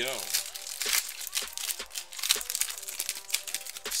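Trading card pack wrapper crinkling and tearing as it is pulled open by hand, a dense run of irregular crackles.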